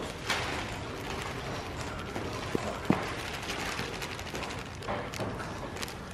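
A small plastic bag of purple metal flake rustling and crinkling as the flake is poured into an open tin of paint, with a couple of small clicks about halfway through.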